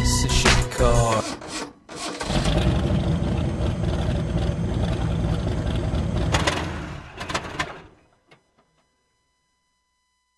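A hip-hop track with rapped vocals ends about a second in. After a short gap, a car engine is started and runs for about six seconds, then dies away, leaving near silence.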